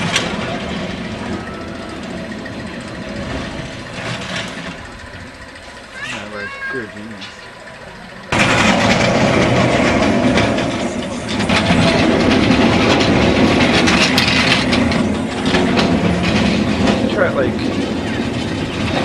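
Steel roller coaster train rolling along its track close by, a rumbling clatter that fades away, then comes in suddenly much louder about eight seconds in, with riders' voices over it.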